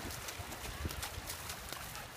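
Running footsteps splashing through shallow water in quick, even strides, about three or four a second.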